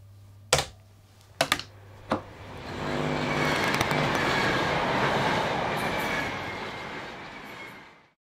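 Outro logo sound effect: a few sharp glitchy hits, then a swelling noisy rumble with faint steady tones that fades out near the end.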